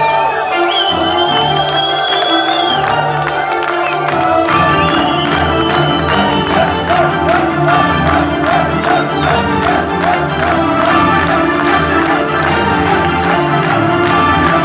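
Heavy metal band playing live: held notes with a gliding lead line, then about four and a half seconds in the drums and the full band come in at a steady driving beat.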